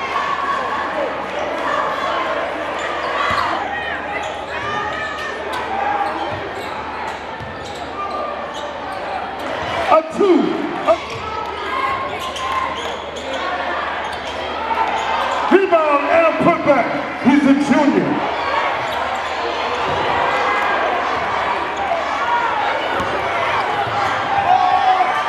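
Live basketball game sound in a gym: a basketball bouncing on the hardwood court amid steady crowd chatter, with bursts of louder voices about ten seconds in and again past the middle.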